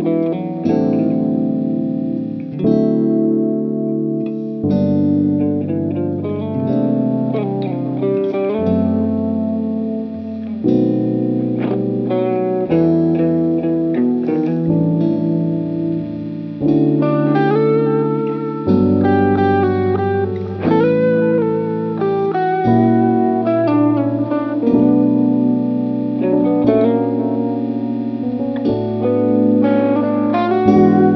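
Electric guitar, a sunburst Godin, playing a solo arrangement of chords and melody together, with bass notes changing every second or two under sustained chords.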